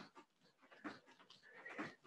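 Near silence, with faint, irregular quick breaths and soft movement sounds from a person jogging gently on the spot.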